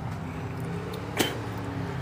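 Faint steady low background hum, with a single sharp click a little past a second in.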